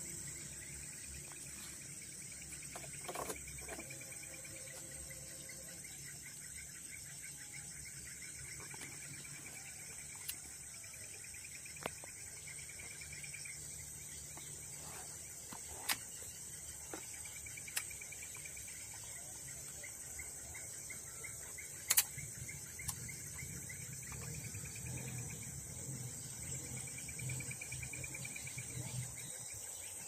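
Tropical forest insects: a steady high-pitched buzz with a lower insect trill that swells and fades every couple of seconds. A few sharp clicks break in, the loudest about two-thirds of the way through.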